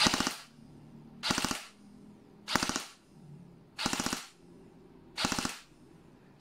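G&G ARP9 2.0 electric airsoft gun (AEG) firing on full auto in five short bursts of several rapid shots each, about one burst every second and a third.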